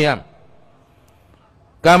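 A monk's voice preaching a Burmese Dhamma sermon. The voice breaks off just after the start, leaves a pause of about a second and a half with only faint room tone, then takes up again near the end.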